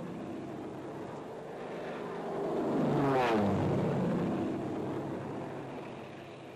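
A propeller aircraft engine passes by. It swells to its loudest about halfway through, its pitch drops as it goes past, and then it fades away.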